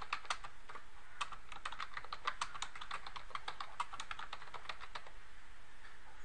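Typing on a computer keyboard: a quick, irregular run of key clicks that stops about five seconds in.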